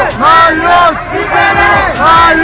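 Loud shouting voices in two long, drawn-out calls.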